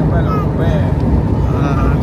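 A man speaking over a loud, steady low rumble of a moving vehicle.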